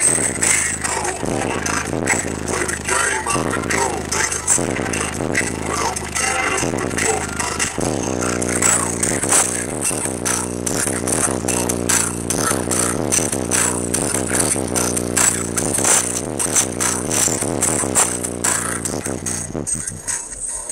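A song with heavy bass played loud through a car audio system driving two custom 12-inch Sundown Audio ZV3 subwoofers on a Sundown SAZ-2500 amplifier, heard inside the car's cabin. The bass line gets deeper and heavier about eight seconds in.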